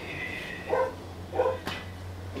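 A dog barking twice, about two-thirds of a second apart, followed shortly by a sharp click.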